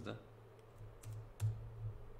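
A few computer keyboard keystrokes, short sharp clicks about a second in, over a low steady hum.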